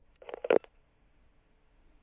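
A short crackle of clicks on a telephone line about half a second in, then faint line hiss, while the call is disconnected.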